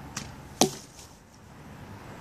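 An arrow from a Specter survival bow striking the target close by: a lighter click, then about half a second later one loud, sharp impact.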